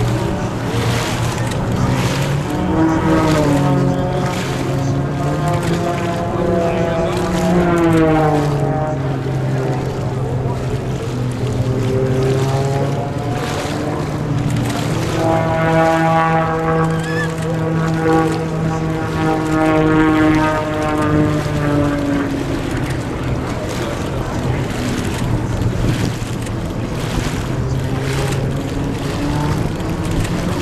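Zivko Edge 540 race plane's six-cylinder Lycoming engine and propeller droning at full power on a low, fast pass. The pitch rises and falls as the plane approaches, passes and turns. It is loudest about a quarter of the way in and again through the middle.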